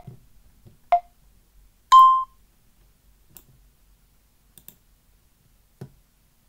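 A few sharp clicks in an otherwise quiet room: one at the start, one about a second in, and the loudest about two seconds in, each with a brief ringing tone. Faint ticks follow later.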